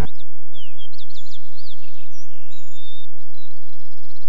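Wild birds chirping outdoors: many short whistled notes that slide up and down in pitch, over faint background noise.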